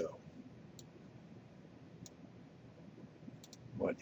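A few computer mouse clicks: a single click about a second in and a quick pair of clicks near the end.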